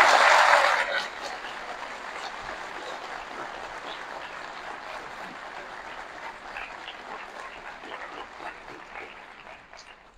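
Audience applauding: loud for about the first second, then settling into quieter, scattered clapping that fades out near the end.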